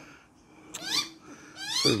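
Australian magpie's begging calls, typical of a young bird pestering its parent for food: two short, rising, whiny squawks about a second apart.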